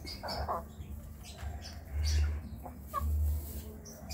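Young Sussex and Wyandotte hens clucking and chirping softly, with a short clear note about three seconds in. Two spells of low rumble come about two and three seconds in.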